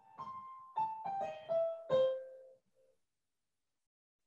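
Keyboard playing a short phrase of about seven notes over two and a half seconds, mostly stepping downward and ending on a held lower note. It is a handful of the same notes replayed in a varied rhythm as a jazz phrasing exercise.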